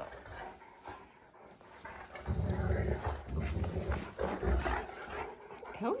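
Great Danes play-growling while wrestling mouth to mouth in a game of bitey face; the growling starts about two seconds in and runs rough and low for a few seconds.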